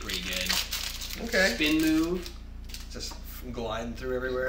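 Foil booster-pack wrapper crinkling in the first half second as a pack is handled and opened, followed twice by a man's voice without clear words.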